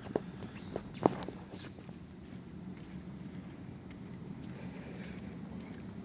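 Footsteps across a gym floor, with a few sharp knocks in the first second or so, over a steady low hum.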